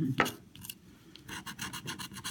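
A handheld scratcher tool scraping the coating off a lottery scratch-off ticket in rapid back-and-forth strokes, starting a little over a second in.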